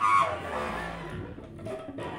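Free-improvised duet of contrabass clarinet and cello. A high reedy clarinet note stops shortly after the start, and quieter, sparse low cello tones follow.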